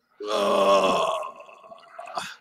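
A person's drawn-out vocal groan, about a second long, trailing off into softer voice sounds.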